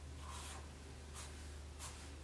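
Sharpie marker drawing on a pad of white paper: a few short, faint felt-tip strokes across the sheet, over a low steady hum.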